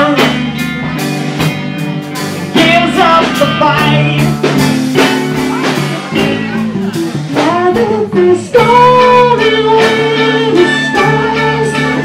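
Live blues-rock band playing: electric bass and guitar over a steady beat of drum hits, with a voice singing over the top.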